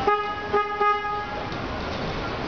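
A car horn honking: three quick toots at one steady pitch, together lasting just over a second.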